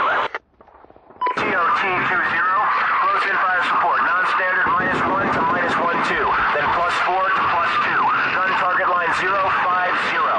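Radio chatter: a short transmission burst and a brief beep tone, then a continuous jumble of overlapping, unintelligible voices over radio.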